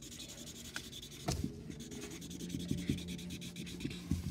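Marker scribbling back and forth on cardboard, colouring in a checkerboard square, in many short rubbing strokes. There is a single light knock a little over a second in.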